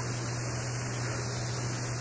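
Steady low electrical hum with an even hiss: background noise of the recording, with no other sound.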